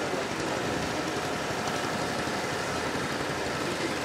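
Steady, even background noise with no distinct events, fairly loud and unchanging throughout.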